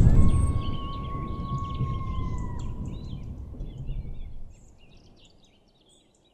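The tail of an end-logo sting: a low rumble fading out over about four and a half seconds, with a held high ringing tone that stops about two and a half seconds in, over a bed of chirping birds.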